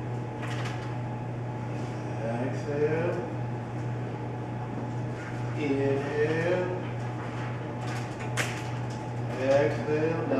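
Brief, low voices talking in snatches over a steady low hum, with one sharp click a little after eight seconds in.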